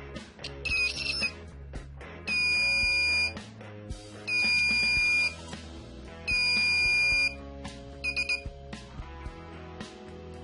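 An electronic buzzer beeping: three loud, steady high-pitched beeps about a second long with about a second between them, with shorter chirps before and after, over background music.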